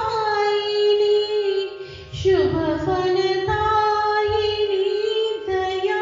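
A high solo voice singing a Hindi devotional song (bhajan) calling on the Mother goddess, drawing out long held notes with a downward slide about two seconds in.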